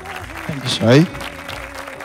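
Applause from the studio panel and contestants, an even clatter of hand clapping over a faint background music bed, with one short spoken word about a second in.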